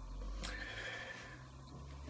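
A faint, brief high-pitched squeak over a low steady room hum.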